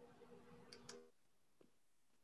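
Near silence: a faint low hum with two faint clicks about three-quarters of a second in, then the sound cuts off to dead silence about a second in.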